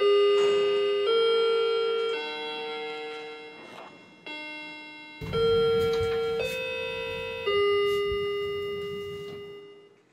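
A bell-like chime tune, like a doorbell or clock chime: single notes struck about once a second, each ringing on and fading. A short pause comes in the middle. In the second half a low rumble and a few knocks sound beneath the chimes.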